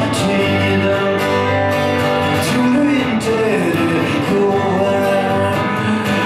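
A man singing a melody in Swedish over a strummed acoustic guitar, live through a PA.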